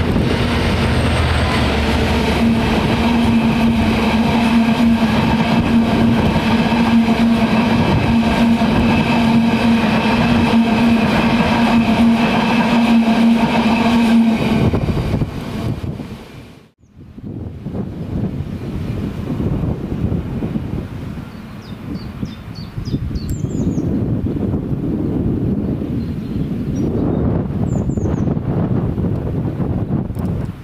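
Diesel freight locomotive running past under power: a loud, steady engine drone with a strong low hum and a stack of higher tones, lasting about fifteen seconds. It fades and cuts off, and then wind noise follows, with a few short bird chirps.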